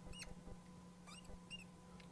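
Faint squeaks of a felt-tip marker writing on a glass lightboard: a few short, high chirps spread over the two seconds, over a low steady electrical hum.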